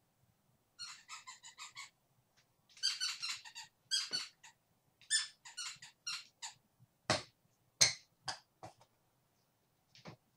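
Squeaky dog toy being chewed, giving short high squeaks in quick runs, with the loudest single squeaks near the end.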